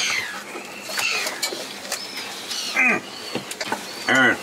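Birds chirping in short high notes a few times, with one louder falling call about three seconds in.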